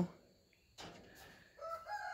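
A chicken calling: quiet at first, then about one and a half seconds in a drawn-out call begins, its pitch stepping upward.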